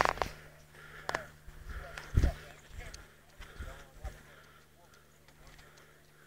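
Indistinct voices talking, with a sharp knock at the start and another about a second in; it goes nearly quiet in the last couple of seconds.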